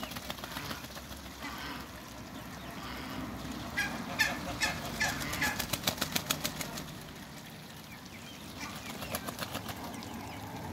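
A backyard flock of ducks, with a run of about five short duck calls about four seconds in, followed by a quick train of wing beats as a duck flaps its wings; more flapping near the end.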